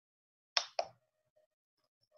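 Two short, sharp clicks about a quarter of a second apart, each fading quickly.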